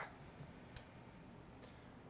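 Near silence: studio room tone, with one faint sharp click a little under a second in and a fainter tick later.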